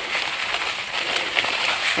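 Ant-killer granules pouring out of a bag onto leaves and soil: a steady hiss with a few faint ticks.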